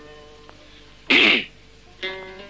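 A single short, loud burst of breath and voice from a person, about a second in, during a near-silent pause in the plucked-string music.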